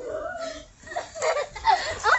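People laughing with high, wavering voices during rough play, louder in the second half.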